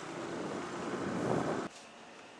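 Wind and road noise from a moving scooter rushing over the microphone. It cuts off suddenly near the end, leaving a low, quiet background.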